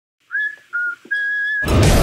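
Intro sting of three short whistled notes, the third held longest, then a sudden loud whoosh with deep bass near the end.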